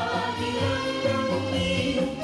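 Several women singing together through microphones, with a live band backing that has steady low notes underneath.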